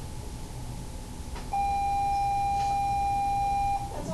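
A single steady electronic beep, one unchanging tone held for a little over two seconds, starting about a second and a half in and cutting off just before the end.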